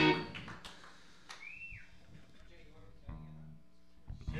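Laughter trails off, then a lull with a few stray electric guitar notes, one of them sliding down in pitch about a second in, and a short low note near the end.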